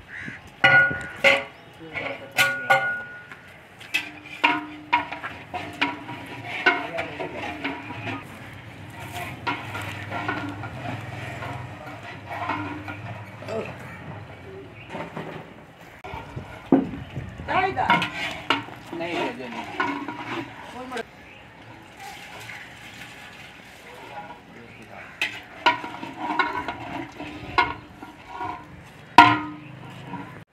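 Scattered metal clanks and knocks of a lid and a long ladle on large metal cooking pots, with men's voices talking in the background.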